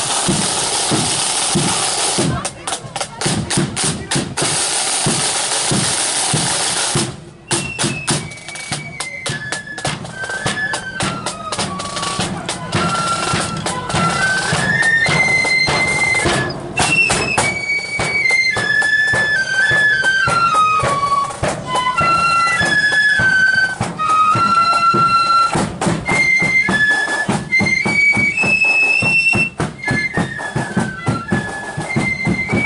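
Marching flute band: the side drums beat alone for about seven seconds, then the flutes come in with a melody over the drum rhythm.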